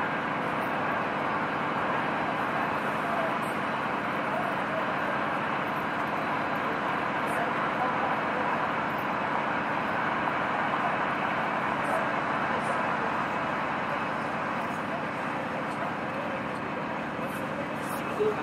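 Steady railway-station ambience: indistinct chatter of many voices mixed with a constant hum of distant traffic, with no clear words and no distinct events.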